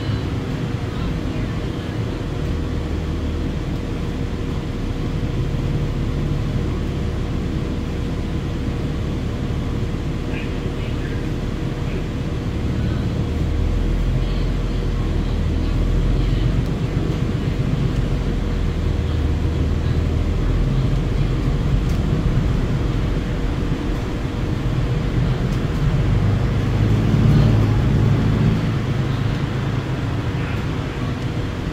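Interior ride noise of a 2016 New Flyer XDE60 articulated diesel-electric hybrid bus underway: a continuous low drivetrain and road rumble that swells at times, with a steady tone running through it.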